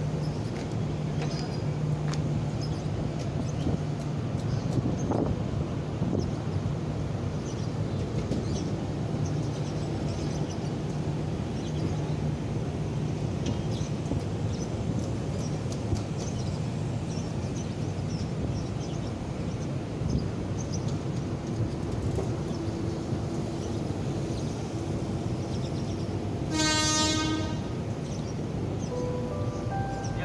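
Passenger coaches of a train rolling slowly past on the rails, a steady rumble with a low hum underneath. A brief horn toot sounds near the end.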